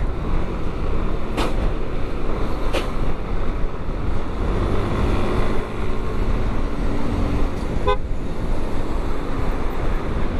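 Motorcycle running at road speed and picking up pace, with steady engine, tyre and wind noise. A few brief vehicle horn toots come through, the last a quick stuttering one near the end.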